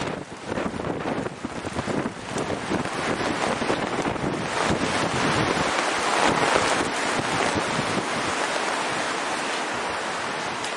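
Wind gusting across the microphone: a rushing noise that rises and falls, swelling for a while about six seconds in.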